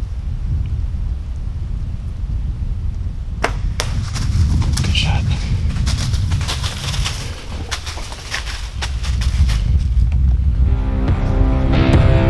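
Wind rumbling on the microphone, then two sharp cracks about three and a half seconds in, typical of a bow being shot and the arrow striking, followed by several seconds of crackling in dry leaves. Music comes in near the end.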